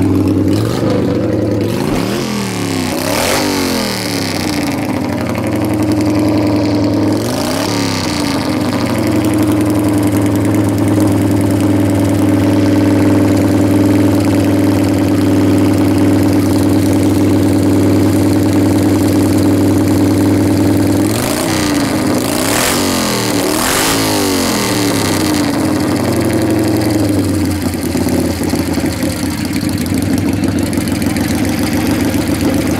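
1959 Harley-Davidson KR's 750 cc flathead V-twin race engine running at a steady idle, blipped up and back down a couple of times a few seconds in and again in a quick series of revs about three-quarters of the way through.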